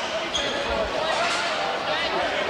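Voices chatting in a school gymnasium, with a short high squeak just after the start and a dull thud a little before the middle.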